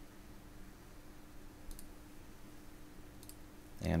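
Two faint computer mouse clicks about a second and a half apart, over a faint steady hum.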